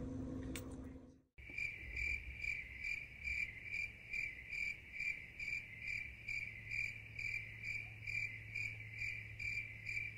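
Crickets chirping: a single insect-like chirp repeating evenly about twice a second, over a faint steady hum. It starts after a brief cut to silence about a second in and stops abruptly when it ends, the mark of an edited-in "crickets" sound effect.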